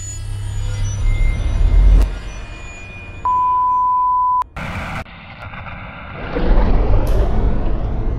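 Cinematic intro sound effects. A deep rumble builds to a sharp hit, and a steady high beep tone lasts about a second, like a film-countdown leader beep. Then comes a sudden burst of noise and a swelling low rumble near the end.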